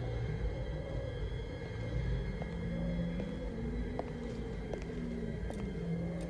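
Quiet, ominous film score of low sustained notes over a steady rumbling hum, with a few faint ticks.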